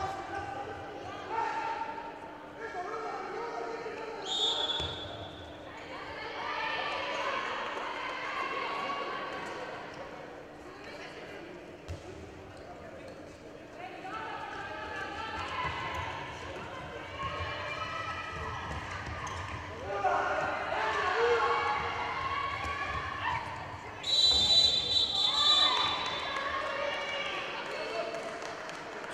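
Indoor handball court sound: a handball bouncing on the floor as players dribble and pass, with players calling out. A referee's whistle sounds briefly about four seconds in and again, louder and longer, about 24 seconds in.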